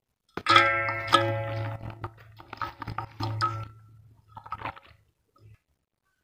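Metal basin ringing as it is knocked about five times over some four seconds, each knock leaving a ringing tone that fades.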